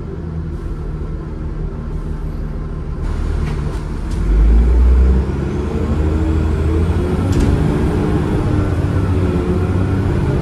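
Cummins ISCe 8.3-litre diesel engine and ZF Ecomat five-speed automatic gearbox of a Transbus Trident double-decker, heard from inside the bus while it is under way. There is a loud low surge about four to five seconds in, then the engine note climbs as the bus pulls, with a faint high whine rising over it.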